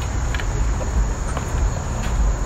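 Steady high-pitched drone of insects, over a low, even rumble of outdoor background noise.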